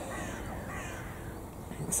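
A bird calling faintly outdoors, with a few short falling calls in the first part.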